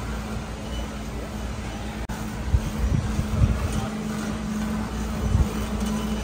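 Warehouse-store background noise: a steady low hum over a general wash of noise, with irregular low thumps and rumbles from about halfway through as the phone is carried while walking.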